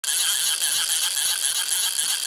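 An intro sound effect for the animated logo: a bright, high-pitched jingling shimmer that holds steady throughout.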